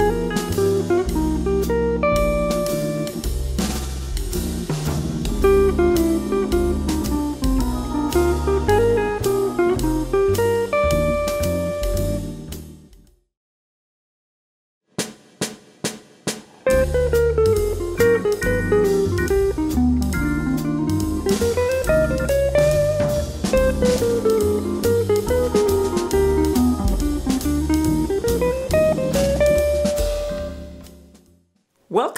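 Hollow-body archtop electric jazz guitar playing a minor ii–V–i single-note lick at slow tempo over a backing track of bass and drums. It fades out about 13 seconds in and there are a couple of seconds of silence. A few quick clicks follow, then the guitar starts another lick over the backing track.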